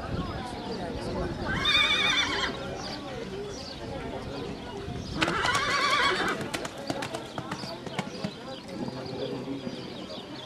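A horse whinnying twice, a quavering high call about two seconds in and a second one about five seconds in, with a run of sharp clicks after the second call and voices talking in the background.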